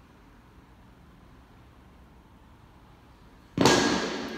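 Quiet room tone, then, just before the end, a sudden loud clank as two small metal weight plates are dropped onto the gym floor, with a brief ringing as it dies away.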